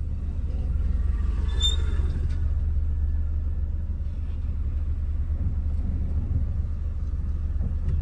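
Steady low rumble of a car heard from inside the cabin with the engine running, and a brief high-pitched squeak about one and a half seconds in.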